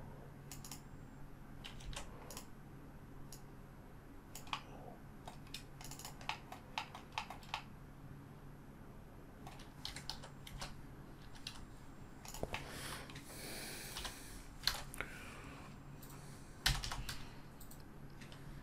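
Scattered computer keyboard key presses and mouse clicks at an irregular pace, with one louder knock near the end, over a faint steady low hum.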